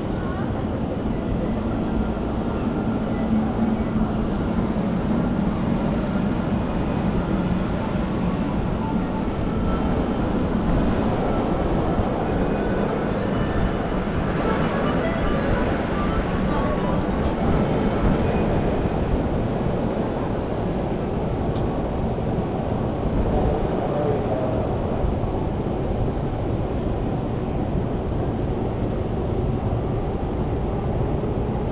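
Steady city street ambience: a continuous rumble of traffic and trains, with voices of passersby now and then.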